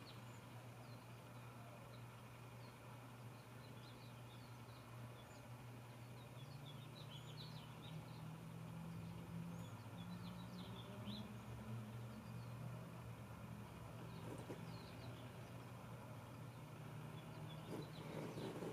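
Quiet room tone: a low steady hum that grows a little louder in the middle, with faint bird chirps heard from outside.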